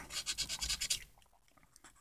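Coin scratching the coating off a scratch-off lottery ticket: a quick run of about eight short, faint scrapes in the first second, then near silence.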